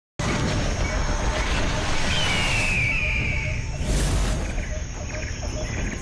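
Television show intro sound design: a dense, noisy effects bed with low rumble. A falling whistle-like tone comes about two seconds in, and a loud whoosh about four seconds in.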